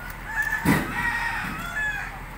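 A rooster crowing, one drawn-out call lasting most of the two seconds, with a loud thump a little under a second in.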